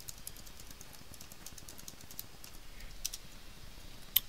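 Keys tapped on a computer keyboard: a quick run of keystrokes lasting about two seconds, then a pause and two more strokes about three seconds in, as an IP address is typed into a browser's address bar and entered.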